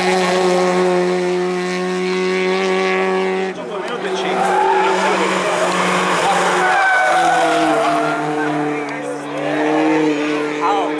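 Peugeot 106 race car's four-cylinder engine pulling hard at high revs, its pitch held steady, with the sound changing abruptly about a third of the way in and again past the middle as the car is heard from new spots along the road. Spectators' voices come through in the middle.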